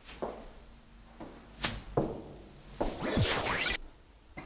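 A few sharp knocks, then about three seconds in a loud whoosh lasting about a second, its pitch sweeping downward, like an edited transition sound effect.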